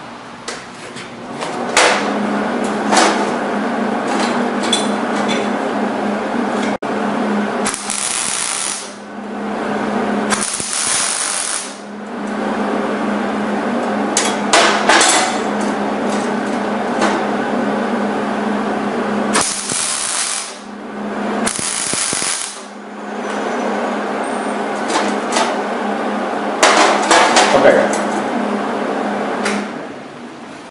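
MIG welding arc crackling steadily while tack welds are laid on the corners of steel square tubing, in several runs with short breaks between them and a few brighter, hissier spells.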